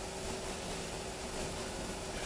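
Room tone: a steady low hiss with a faint steady hum, with no distinct event.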